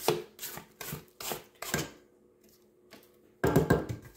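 Silicone spatula scraping cookie dough from the sides and bottom of a Kenwood stand mixer's stainless steel bowl, in short strokes about two or three a second. The strokes pause near the middle, then come as a quick run of louder scrapes near the end.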